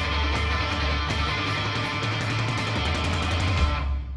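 Live rock band playing loud, with electric guitar, heavy low end and drums with regular cymbal hits; the band cuts off abruptly near the end.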